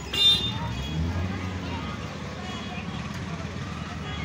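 Street traffic: a steady low rumble of vehicle engines, with a short, loud horn toot just after the start.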